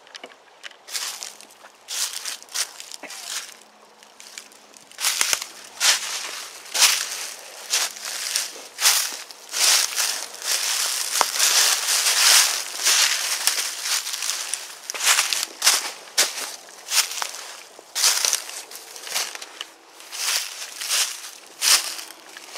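Footsteps crunching through dry fallen leaves and twigs, about one to two steps a second, with a near-continuous crunch in the middle where the steps come close together.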